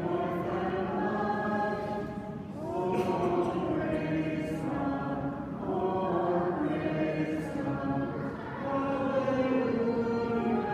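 Church congregation singing a hymn together in unison, many voices in sustained sung phrases, with short breaks between phrases about two and a half seconds in and again near eight seconds.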